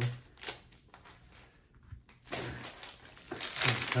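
Plastic bag around a keyboard case crinkling as it is slit open and pulled apart: a few scattered crackles, then a louder burst of crinkling a little past halfway.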